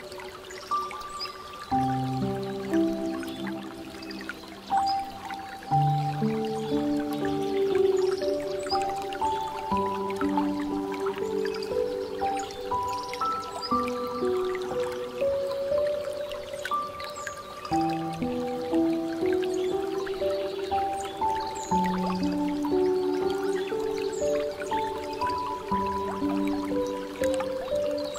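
Slow, soft piano music, with the faint trickle and drip of water from a bamboo fountain beneath it.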